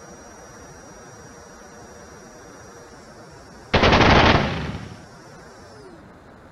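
Machine-gun sound effect: one rapid burst of gunfire, lasting under a second, a little past halfway through, then fading out. It marks the chase jet's simulated guns shot. Underneath runs a steady faint background noise with a thin high whine.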